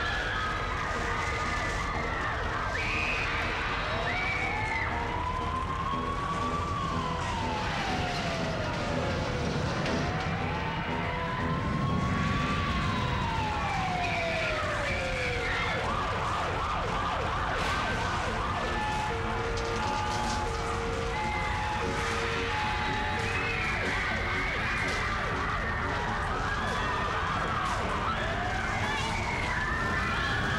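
Sound-effect track of a staged subway earthquake: a siren wails slowly up and down twice over a steady low rumble. Shorter wavering high tones come near the start and end, and a pulsed beeping tone sounds about two-thirds through.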